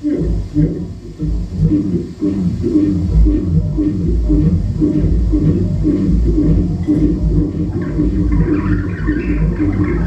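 Live experimental electronic music: a looped, voice-like low pulse repeats about three times a second over a deep bass drone. A higher, grainier layer rises in the last couple of seconds.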